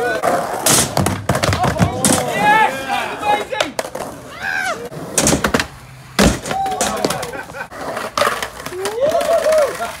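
Sharp clacks and thuds of skateboards popping and landing, repeated irregularly, with voices shouting and chattering between them.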